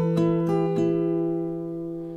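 Acoustic guitar with a capo at the seventh fret, fingerpicked one note at a time through an A minor chord shape. A few more notes are plucked in the first second, then the chord rings on and slowly fades.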